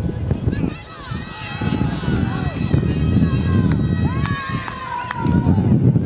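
Sideline spectators shouting and yelling encouragement, several high voices overlapping, with one long drawn-out shout near the end. Wind buffets the microphone throughout.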